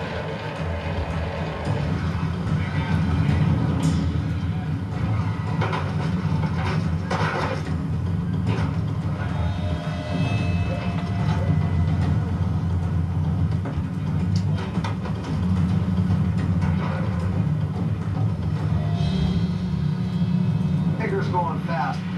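Crab boat deck noise heard through a television's speaker: a steady low rumble of machinery with scattered clanks of gear, under background music. Indistinct voices come in near the end.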